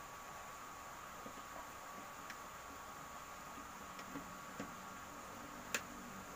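Faint clicks and small taps from handling wires and parts at an electrical panel, over a steady faint hum and hiss; the sharpest click comes near the end.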